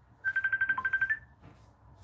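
Phone ringtone from an incoming call: a quick electronic trill of about ten high beeps in roughly a second, with one lower note near the end and a slightly higher closing note.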